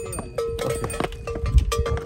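Bells on passing dzopkyo (yak–cow crossbreed) pack animals clanking unevenly with their stride, each strike ringing on.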